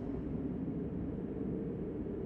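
Low, steady cartoon cave ambience, a dull rumble with a faint hiss, held while a dropped rock falls down a deep chasm; no impact is heard yet.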